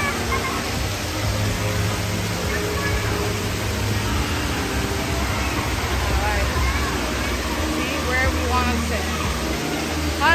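Indoor water park din: a steady rush of water pouring from a play structure, with children's voices in the background and a steady low hum.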